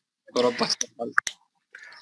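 A man's voice briefly, then a few sharp clicks about a second in.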